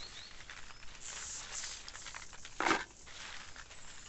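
Bean plants and pods rustling and crackling as they are handled and picked by hand, with one louder crackle near the three-second mark.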